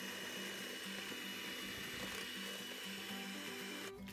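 Electric hand mixer running at a steady speed, its twin beaters whisking thin, wet cake batter in a stainless steel bowl. It switches off just before the end.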